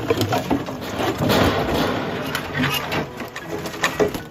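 Junk being handled: a large white tub shifted and lifted out of a pile of loose debris, with irregular knocks and clatter and a stretch of rough scraping about a second in.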